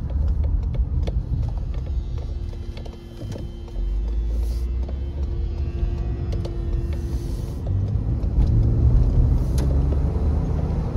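Car driving over a bumpy road, with knocks from the tyres and suspension over a steady low engine and road rumble. The rumble dips about three seconds in, then picks up again as the car accelerates.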